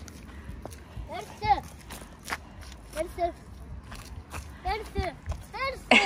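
Footsteps on asphalt with scattered light clicks, and a few short, soft high-pitched vocal sounds in between.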